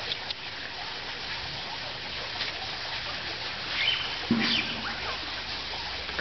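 Water lapping and splashing gently around an Amazon river dolphin at the surface of its pool, with a few faint high chirps about four seconds in.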